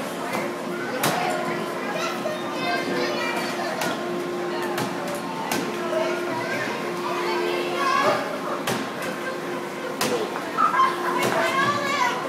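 Children playing and talking, with scattered sharp clicks and a steady low hum that cuts out and comes back several times.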